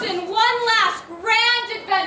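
A woman's voice calling out in a high, sing-song way: two phrases, the second held on one high note for about half a second.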